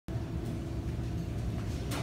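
Room tone: a steady low rumble with a faint click about half a second in and another near the end.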